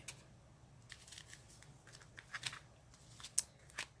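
Small plastic bags of seed beads being handled and set into a clear plastic organizer box: light, scattered clicks and crinkles of plastic.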